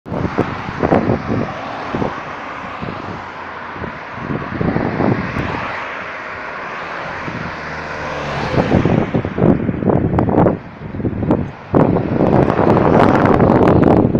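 Road traffic passing close by on a multi-lane road: a car and then a pickup truck go by, their tyre and engine noise swelling and fading. Wind buffets the microphone throughout, heavier near the end.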